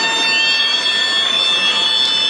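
Referee's whistle blown to signal a penalty kick: one long, shrill blast held for about two and a half seconds, rising slightly in pitch just after it starts.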